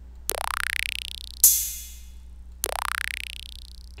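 Electronic vibraslap sample from a virtual drum kit, triggered twice: each time a rattling sweep that rises in pitch over about a second. Between the two, a sharper, louder electronic drum hit rings out briefly.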